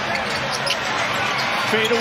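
Live NBA game sound: steady arena crowd noise with a basketball being dribbled on the hardwood court, and a commentator's voice coming in near the end.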